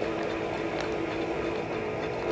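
AmMag SA automated magnetic-bead purification instrument running a steady hum during its nozzle wash, with a couple of faint clicks.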